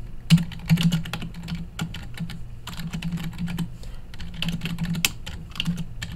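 Typing on a computer keyboard: a quick, irregular run of keystrokes with short pauses, over a steady low hum.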